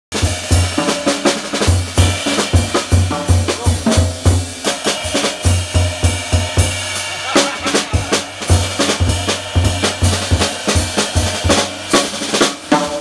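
Live jazz trio: an Eastman custom seven-string archtop guitar soloing over walking upright bass and a drum kit, with the drums' snare, bass drum and cymbal strikes among the loudest sounds and deep bass notes pulsing steadily underneath.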